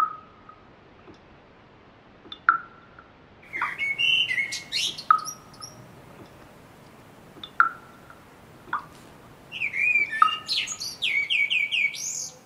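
Songbirds singing: a burst of quick, varied song phrases about four seconds in and another near the end. Underneath, a short sharp note repeats about every two and a half seconds.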